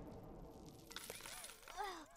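Cartoon sound effects for a collision: the noisy tail of a crash fades out, then from about a second in comes a tinkling, clinking spill of coins and a tone that wobbles up and down, a dizzy-daze effect.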